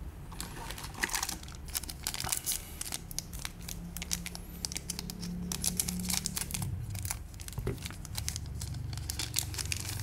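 Foil trading-card booster pack crinkling as it is handled and cut open with scissors, a dense run of rapid crackles, with the cards slid out of it.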